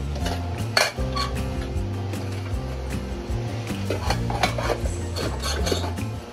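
Stainless steel dome lids clinking against a large flat steel griddle as they are set down over the pizzas: a sharp clink about a second in, then several more in a cluster near the end, over steady background music.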